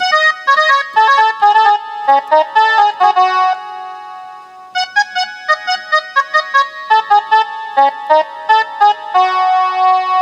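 Casio SA-41 mini keyboard played one note at a time: a quick phrase of melody notes, a pause about three and a half seconds in while the last note fades, then a second phrase that ends on a held note.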